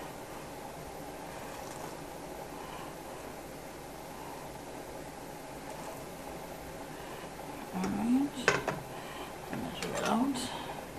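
Steady kitchen background for most of the time. Near the end come a few brief clinks as a filled glass canning jar is handled and its plastic funnel is lifted off.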